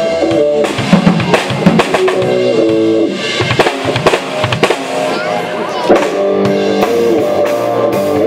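A live rock band playing: a Tama drum kit with bass drum and cymbal strikes under a guitar holding sustained notes.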